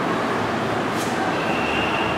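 A duster being rubbed across a whiteboard to wipe it clean, over a steady, loud rushing noise. There is a short sharp click about a second in.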